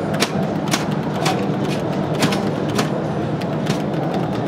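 Sharp mechanical clicks about twice a second from the pinball machine's solenoids as its test mode cycles the drop targets, over a steady background din.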